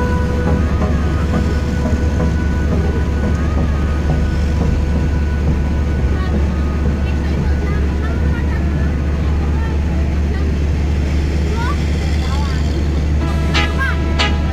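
Steady low rumble of a moving road vehicle's engine and tyres, heard from the vehicle itself, with faint voices or chirps in the background. About a second before the end, a pitched sound with sharp clicks comes in.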